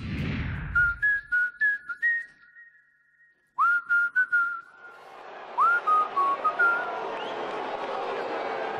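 A whoosh, then a short whistled tune of pure, sliding notes over sharp percussive hits. It breaks off to near silence for a moment midway, then the whistling picks up again.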